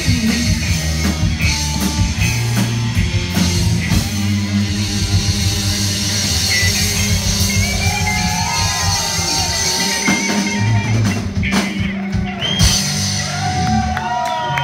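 Live punk rock band playing: distorted electric guitar, a drum kit and a woman singing, recorded loud from the audience.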